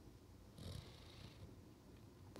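Near silence: room tone, with one faint brief noise a little over half a second in.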